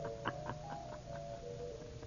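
Radio-drama organ background holding a few sustained notes. Over it, a quick run of soft pulses, about four a second, fades away over the first second.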